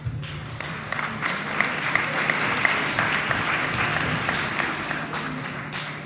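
Audience applauding, the many claps dying away near the end.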